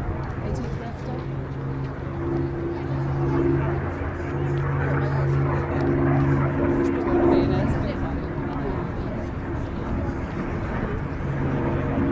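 Supermarine Spitfire's Rolls-Royce Merlin V12 engine droning steadily as the aircraft flies by, swelling in the middle and easing off again.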